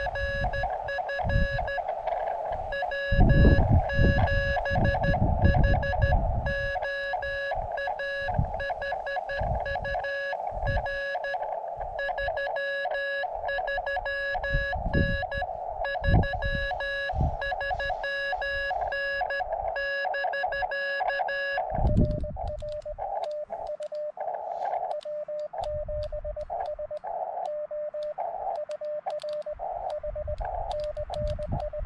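Morse code (CW) on an amateur radio transceiver: a single steady tone keyed on and off in dots and dashes, exchanging call signs and signal reports with station W7HO. The tone sounds buzzier with overtones until about two-thirds of the way through, then cleaner, and bursts of low rumble come and go, loudest a few seconds in.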